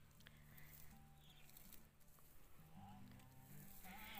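Near silence: a faint low steady hum with a few soft clicks.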